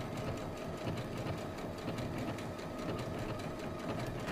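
Electric domestic sewing machine stitching steadily at a slowed speed setting, sewing around the edge of a fused fabric appliqué.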